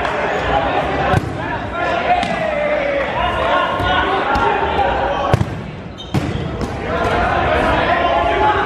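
Dodgeballs thrown and smacking off the hardwood gym floor, walls and players: sharp hits about a second in and twice more around five and six seconds in. Players shout and call out throughout, echoing in the hall.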